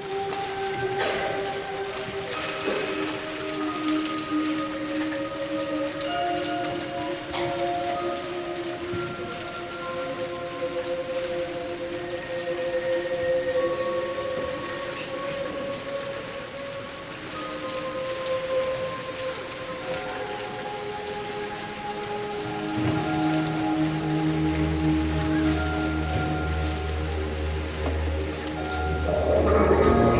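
Concert band players crinkling and rustling sheets of paper, a crackling patter over long held notes from a backing audio track. Low bass notes come in about two-thirds of the way through, and the sound swells near the end as more instruments enter.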